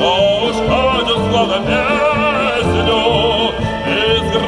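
A wind band of clarinets and brass playing a lively instrumental passage of a Russian folk song, with a steady beat in the low brass.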